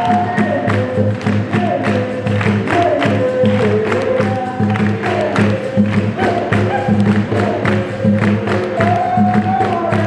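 Capoeira roda music: a group singing together over steady, rhythmic hand clapping and the percussion of the roda's musicians.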